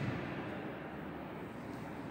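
Quiet, steady background noise with no distinct event in it, and a soft low thump at the very start.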